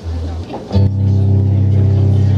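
Electric guitar through an amplifier: a short low note, then just under a second in a louder low note that rings on steadily.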